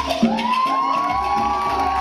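Cuban salsa music with a steady bass line, and a crowd cheering over it. Several long rising whoops start in the first half-second and are held for about two seconds.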